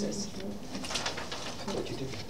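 Low, murmured voices with a few faint clicks, quieter than ordinary talk.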